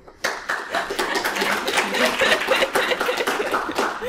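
A small room audience clapping, a short round of applause that starts a moment in and stops near the end, with a little laughter mixed in.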